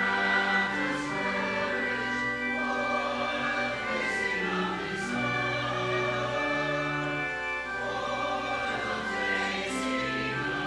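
Church choir and congregation singing a processional hymn, the notes held long and steady.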